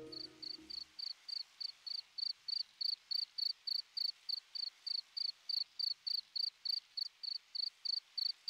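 Cricket chirping steadily, short high chirps a little over three a second, after a music cue fades out in the first second.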